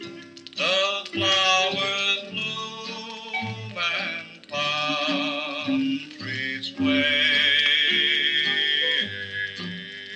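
A late-1950s country/rockabilly 45 rpm single playing on a turntable: a band with guitar and bass holds long wavering notes, between sung lines of the song.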